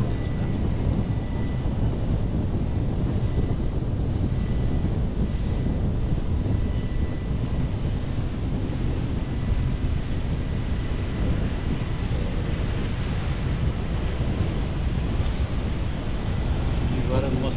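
Steady wind rushing over the microphone of a pole-held camera while parasailing, a constant low rumbling buffet with no pauses.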